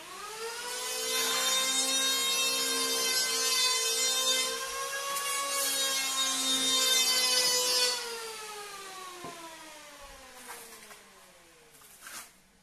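An electric power tool's motor spinning up with a rising whine, running steadily with a hissing whir for several seconds, then slowly winding down in pitch and fading as it coasts to a stop.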